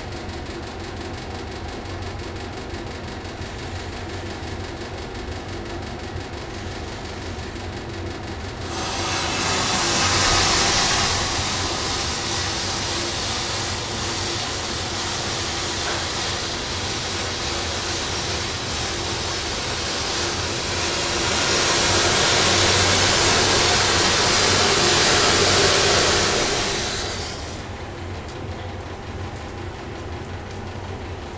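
Massed match heads catching fire in a chain reaction: a loud fizzing hiss that starts suddenly about a third of the way in, swells twice as the flame spreads, then dies back near the end. Before it there is only a steady low background noise.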